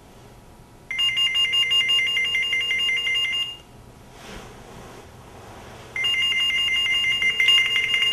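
Cell phone ringing: two rings of a fast-warbling two-tone electronic ringtone, each about two and a half seconds long, about two seconds apart.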